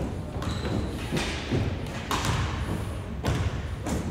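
Basketball bouncing on a hardwood gym floor: several echoing thuds, roughly a second apart, as a player dribbles at the free-throw line before shooting.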